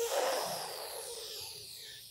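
A person's long audible breath during a back-extension exercise: a hiss of air that starts sharply and fades away over about two seconds.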